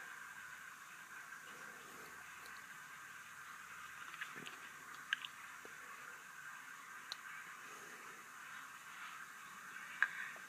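Faint steady hiss with a few soft, small clicks and squishy touches scattered a second or two apart, from hands handling the recording device and the lip balm up close.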